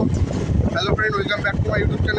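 Heavy wind rumble on the phone's microphone while riding along the road, with a man's voice talking from about a second in.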